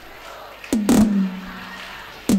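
Low crowd murmur, then a sharp knock about two-thirds of a second in, followed by one low note held steadily over the PA for over a second.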